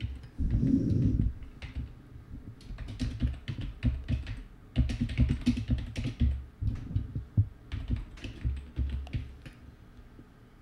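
Typing on a computer keyboard: a quick, uneven run of key clicks as a short line of text is entered. A dull low thump comes in the first second, before the typing.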